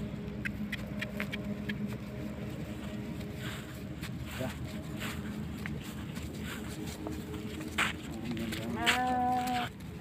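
Scattered light knocks and steps, then one drawn-out call from a farm animal near the end, rising briefly at its start.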